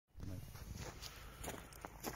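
Footsteps on a dirt farm yard: a few faint scuffs over a low, steady rumble.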